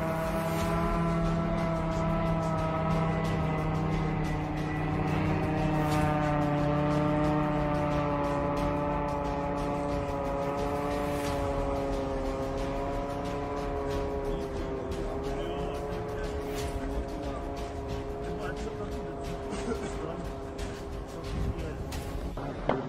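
Engine of a long-range attack drone flying overhead: one steady droning note that drifts slowly in pitch and eases slightly in loudness over the second half.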